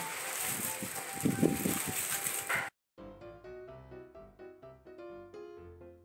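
Rustling and handling noise from gloved hands pressing wet cement mortar flat on a sheet of paper, over a hissy live background. This cuts off abruptly just before halfway, and soft piano background music follows.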